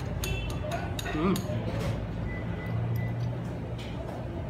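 Metal fork clinking against a plate several times, mostly in the first two seconds, with background music and faint voices underneath.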